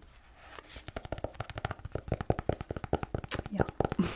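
Fingernails tapping quickly and irregularly on a hardcover notebook, starting about half a second in.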